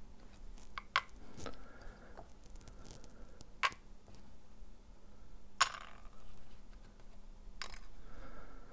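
Light hard clicks and taps as small circuit boards of a DJI O3 Air Unit are set down one at a time on a metal pocket scale's weighing platform, about five in all, the sharpest a little past halfway, with faint handling rustle between.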